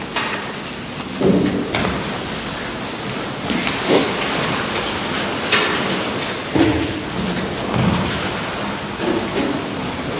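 Steady hiss with irregular soft bumps, rustles and light knocks: handling noise as the altar vessels are moved and cleared.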